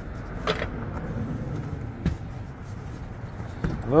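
A low, steady rumble of outdoor background, with a brief rustle about half a second in and a click about two seconds in as a nylon mesh ball bag is handled.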